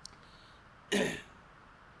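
A man clears his throat once, briefly, about a second in, close to the microphone, in a pause in his speech.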